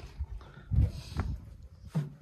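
Short, low animal calls, the loudest a little under a second in.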